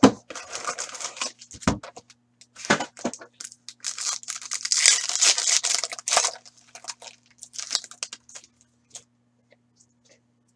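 Cardboard box lid opening with a sharp snap, then a foil card-pack wrapper being torn open and crinkled by hand, with the longest, loudest tearing about four to six seconds in and scattered crinkles after.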